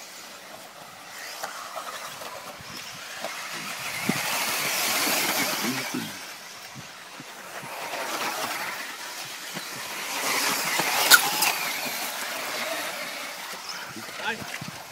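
1:10 scale electric 4WD off-road RC buggies racing on a dirt track. Their high-pitched motor whine and tyre hiss swell up twice as the cars pass close, with a single sharp knock about eleven seconds in.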